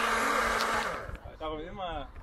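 Personal single-serve blender running, blending fruit for a smoothie, with a steady motor hum under a loud whirr; it cuts off about a second in.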